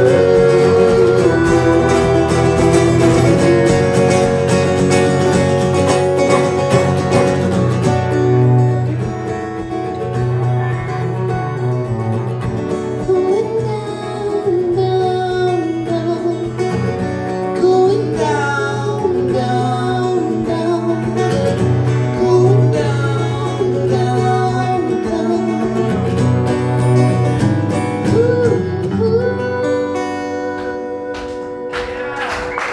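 Live folk song played on acoustic guitars with a cello, and a woman and a man singing.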